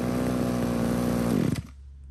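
Mitsubishi TB26 two-stroke brush cutter engine running at a steady speed, then shut off about a second and a half in, its note dropping away as it dies.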